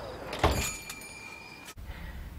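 A sharp knock with a thin ringing tone about half a second in, over low room noise; the sound cuts off abruptly near the end.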